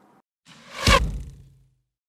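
Logo-sting sound effect: a whoosh that swells to a peak about a second in, with a deep boom under it that fades over the next half second.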